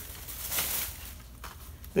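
Faint rustling and crinkling of plastic packaging as a packaged fishing lure is taken out of a bag, with a brief click about one and a half seconds in.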